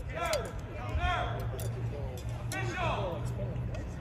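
Several distant voices calling out across an open playing field, over a low steady hum.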